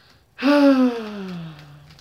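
A man's long, breathy voiced sigh, starting about half a second in and falling steadily in pitch.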